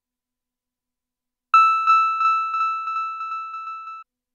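A bell-like electronic tone starts about one and a half seconds in and is repeated by a Max/MSP feedback delay patch, echoing about three times a second while fading. It cuts off suddenly at the end.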